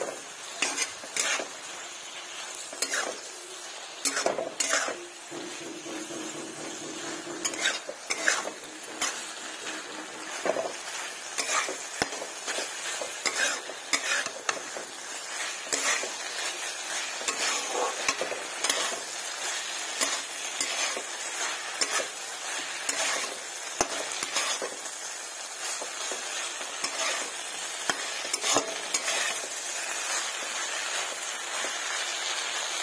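Spatula stirring okra and potato pieces in a frying pan (kadai), with irregular scrapes and knocks against the pan over a steady sizzle of frying.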